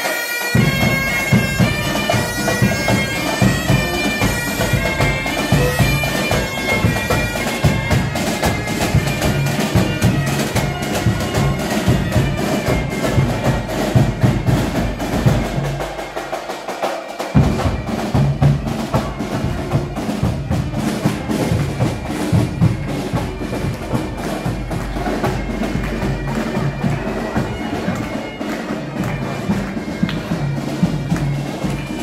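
Scout pipe band playing bagpipes, the steady drone under a skirling melody, with a drum beating time.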